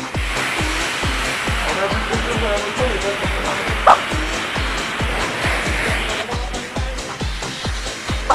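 High-pressure car-wash lance spraying water onto a motorbike, a steady hiss that stops about six seconds in, heard over background music with a steady beat.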